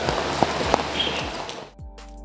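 Steady rain falling, with scattered sharp drop hits, over background music with a regular beat. About three-quarters of the way through, the rain sound cuts off suddenly and only the music carries on.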